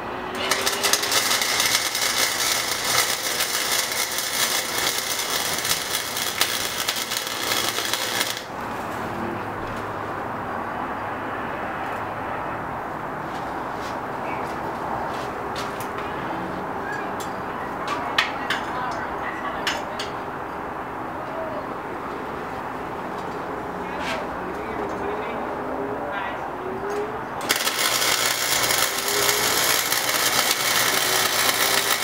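Wire-feed welder arc crackling steadily while welding steel square tubing, for about eight seconds, then stopping. After a pause with a few light clicks, the welding crackle starts again near the end.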